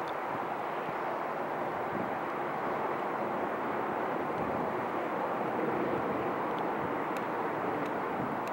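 Steady, even rumble of distant engines, swelling slightly a little past the middle.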